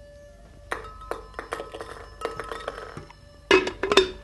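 Glassware and dishes clinking and knocking as a drink is set up at a glass blender: a run of light clinks from about a second in, then a louder clatter near the end.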